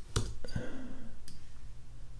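A few separate clicks from a computer keyboard and mouse during text editing, spaced irregularly across the two seconds.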